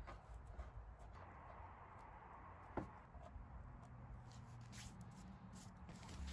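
Near silence with faint scratching: fingers picking softened badge adhesive, loosened by label remover, off a car's painted boot lid. One small click a little under three seconds in.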